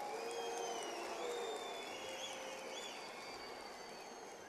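Audience applauding in a large hall, fairly faint and easing off slightly toward the end.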